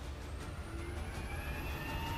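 J-15 carrier fighter's jet engines spooling up: a rising turbine whine over a steady low rumble, growing slightly louder.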